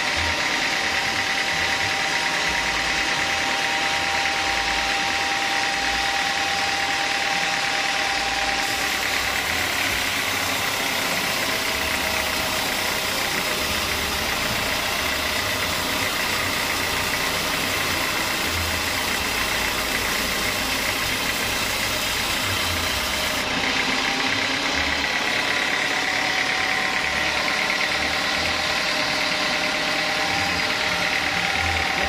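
Sawmill band saw running steadily, its blade ripping lengthwise through a thick timber plank, over the continuous drone of the machine's engine.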